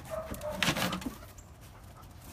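A dog vocalizing: a brief thin whine, then a louder, rougher sound a little over half a second in.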